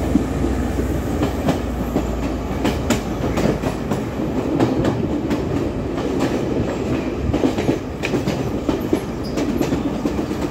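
Passenger train running along the track, heard from beside the carriage: a steady rumble of wheels on rail with irregular clicks as the wheels pass over rail joints.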